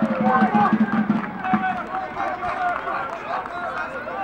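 Several voices shouting and calling across an outdoor football pitch during open play, overlapping one another, loudest in the first second or so.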